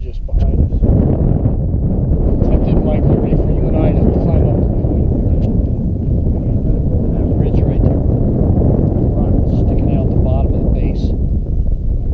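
Loud, steady wind buffeting the camera's microphone, a low rumble that covers everything, with faint voices showing through in places.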